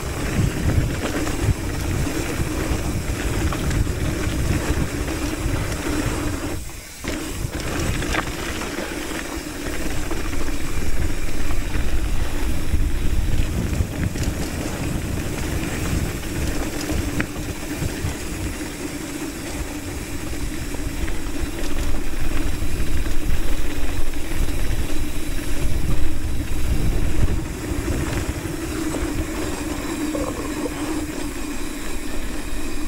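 Wind rushing over the camera microphone and a hardtail mountain bike's tyres rolling fast over loose dirt and gravel on a downhill descent. The noise is continuous, with a brief drop about seven seconds in and louder stretches later on.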